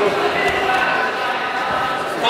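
Indistinct voices of several people talking at once in a large hall, with no single clear speaker.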